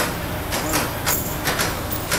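Construction site noise: a steady low rumble with frequent, irregular sharp knocks and clatter.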